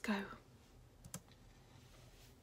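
A single short click about a second in, over quiet room tone.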